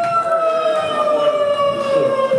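A long held electronic tone over the club's sound system, sliding slowly and steadily down in pitch like a siren.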